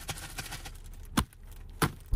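Two sharp clicks of camera handling, about two-thirds of a second apart, over a low hum inside a parked car.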